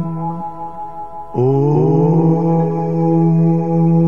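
Meditation music of steady held drone tones, quieter for the first second or so. About one and a half seconds in, a voice enters with a long chanted "Om" that slides up in pitch and then holds.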